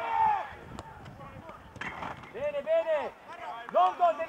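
Voices shouting across an open sports field in drawn-out calls without clear words: one shout right at the start, a longer string of calls in the second half, and another near the end.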